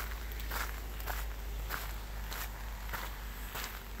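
Footsteps on a gravel trail at an even walking pace, about three steps every two seconds, over a low steady rumble.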